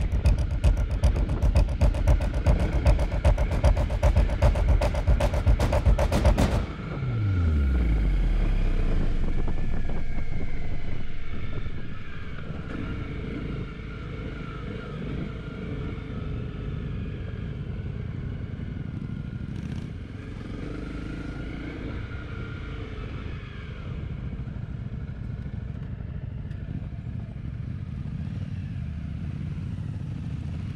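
Motorcycle engine running on the move, with dense rapid pulsing for the first six seconds or so. Then the pitch falls sharply as the revs drop, and the engine runs on quieter and steady.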